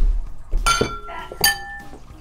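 A utensil clinking against a ceramic dinner plate three times while food is served onto it, each strike ringing briefly. A dull thump comes at the very start.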